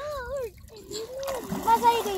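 Shallow water splashing as a child kicks and slaps at it while wading, mostly in the second half, with children's voices over it.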